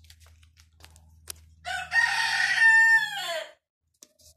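A rooster crowing once: a single loud call of about two seconds, starting about one and a half seconds in and falling in pitch at its end. A few light clicks come before it.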